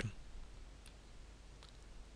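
Quiet room tone with a low steady hum and a couple of faint clicks, about a second in and again near the end, from the computer input used to draw on screen.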